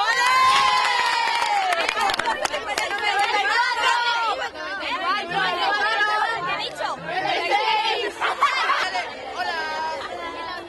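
A crowd of young fans shouting and cheering together, many high voices at once, loudest in the first couple of seconds.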